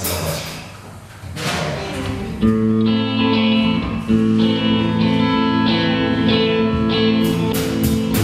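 Rock band playing a song intro on electric guitar and keyboard: a few sparse chords, then from about two and a half seconds held chords ring out. Near the end the drums come in with a steady beat.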